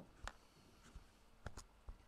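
Near silence broken by a few short computer mouse clicks, one early and a quick cluster of three near the end.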